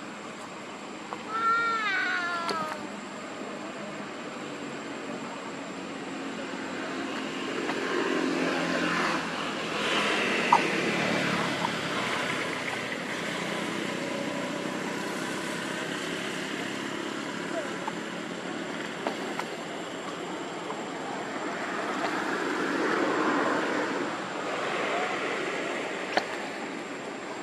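A baby long-tailed macaque gives a few quick, high, falling squeals about two seconds in.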